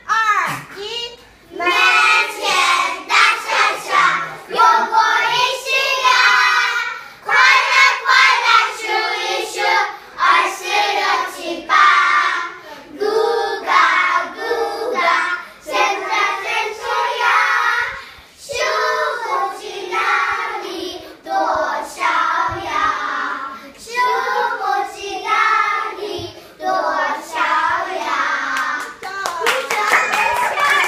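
A group of young children singing a song together, in phrases with short breaks between them.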